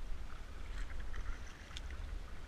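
Kayak paddle strokes: water splashing and dripping off the paddle blade in many small, scattered drips, over a low steady rumble.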